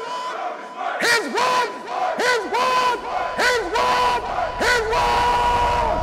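A group of voices shouting a chant in unison, one call about every second. Each call swoops up into a held note, and the last few calls are held longer.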